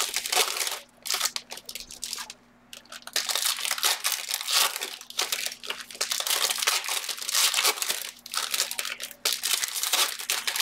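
Foil wrappers of Panini Select trading-card packs crinkling and tearing as the packs are ripped open by hand. The sound comes in repeated bursts, with a brief lull about two seconds in.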